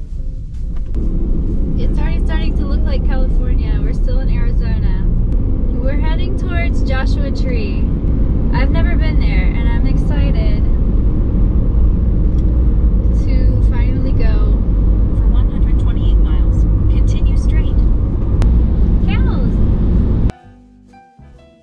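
Ford Transit van's engine and road noise heard from inside the cab as the van pulls away and drives on the highway: a loud, steady low rumble that rises about a second in. A person's voice comes and goes over it.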